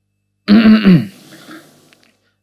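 A man clearing his throat once, a short burst about half a second in that drops in pitch at its end.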